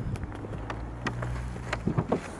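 A few footsteps on a tarmac forecourt, short separate steps spread over two seconds, over a low steady hum.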